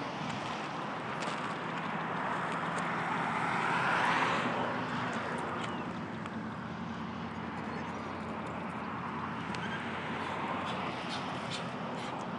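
A vehicle passing by, its noise swelling to a peak about four seconds in and then fading, over a steady outdoor background.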